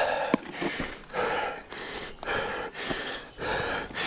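A man breathing hard in quick, regular in-and-out breaths, winded after a mountain-bike crash. A single sharp click comes about a third of a second in.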